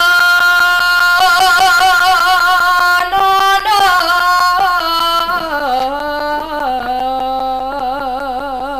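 A girl's solo voice singing a Romanian folk song, loud and strong, holding long notes with a wavering vibrato and stepping down in pitch about halfway through.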